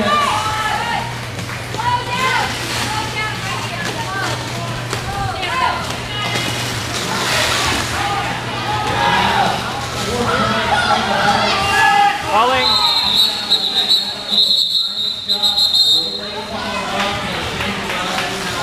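Scattered voices of skaters and people around the track talking and calling out in a large echoing hall, over a steady low hum. About two-thirds of the way through, a referee's whistle sounds one long, high blast lasting about three seconds.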